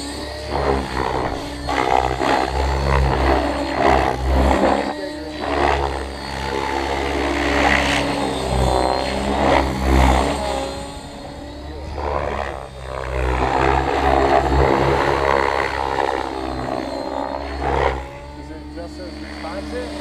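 Thunder Tiger Raptor E700 electric RC helicopter in flight at low head speed, rotor and motor sound rising and falling in pitch and loudness as it manoeuvres.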